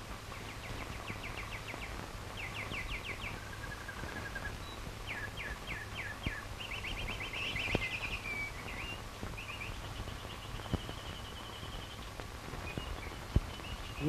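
Small birds singing, with runs of quick repeated chirps and trills, over a steady low hum and hiss. A few sharp clicks break in, the loudest near the end.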